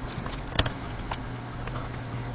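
A few light, sharp clicks and taps from hands handling the laptop's RAM modules and plastic case around the memory slots, the loudest about half a second in, over a steady low hum.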